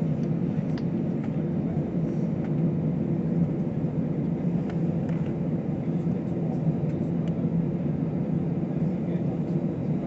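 Airliner cabin noise: the steady low drone of the jet engines while the plane taxis on the ground, heard from inside the cabin.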